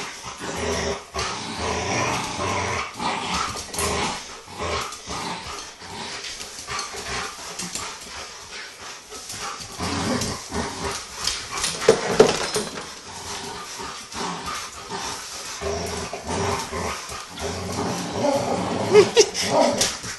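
A chocolate Labrador and a pit bull puppy playing tug-of-war over a plush toy, with play growling and many short scuffling knocks throughout. The loudest moment comes about twelve seconds in.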